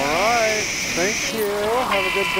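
Warbling, voice-like sounds swooping up and down in pitch, with no clear words, over a steady high-pitched whine that stops about halfway through. The whine is part of a dictaphone sound collage.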